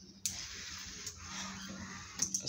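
Small geared DC motors running steadily, driving the automatic mosquito net's roller. The sound starts suddenly a moment in and holds even.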